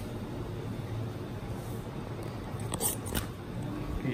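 Steady low background hum, with two or three short clicks about three seconds in.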